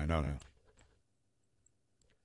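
A man's voice for the first half second, then faint, scattered clicks of a computer mouse.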